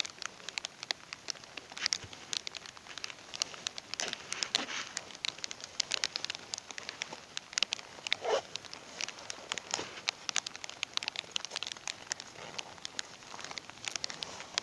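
Camouflage jacket fabric rustling and crackling, with irregular clicks throughout, as the jacket is handled and fastened by its zipper and velcro placket right at the microphone.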